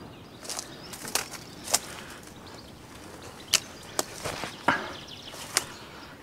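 Footsteps through dry brush: about seven sharp, irregular cracks of dry twigs and reed stalks snapping underfoot, with a brief rustle of brushing through dry reeds about four and a half seconds in.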